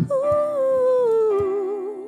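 Worship band music: a woman's voice holds one long sung line that slides slowly downward with vibrato, over sustained keyboard chords and a few low kick-drum beats.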